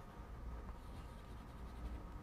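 Chalk scraping and tapping faintly on a blackboard as a hexagonal lattice with small circles is drawn, over a steady low hum.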